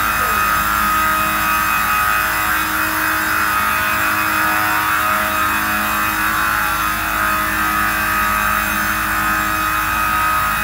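Industrial roller-fed woodworking saw running steadily as boards feed through it, giving a constant high whine over a rushing noise.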